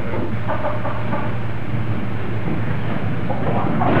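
Steady low hum and hiss of an early-1930s optical film soundtrack. A few faint, short sounds lie over it, about half a second in and again near the end.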